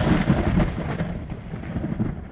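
An end-screen sound effect: the rumbling tail of a thunder-like boom with scattered crackles, fading steadily away.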